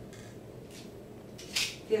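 Faint handling of a plastic HandiHaler capsule inhaler as a capsule is dropped into its chamber: a few light clicks over low room noise.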